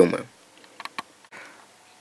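A few faint, light clicks about a second in, from a small plastic dropper bottle and its cardboard box being handled on a wooden table, followed by a soft brief rustle.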